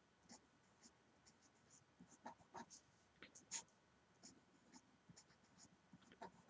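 Felt-tip marker writing on paper: a few faint, short strokes, the clearest between about two and four seconds in.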